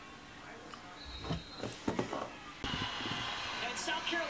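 A few dull thumps, then about two and a half seconds in a basketball broadcast on a TV comes in abruptly: arena crowd noise heard through the TV's speaker.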